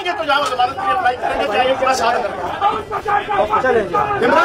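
Several men's voices talking over one another in a crowded room, loud and continuous.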